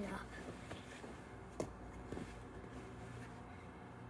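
Faint rustling of a large soft blanket being folded by hand, with one short sharp tap about a second and a half in.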